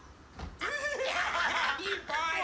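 Men laughing, starting about half a second in after a brief lull.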